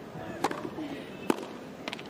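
Sharp hits of a tennis ball on racket strings during a point: one about half a second in, another nearly a second later, and a quick double knock near the end, over a low steady crowd background.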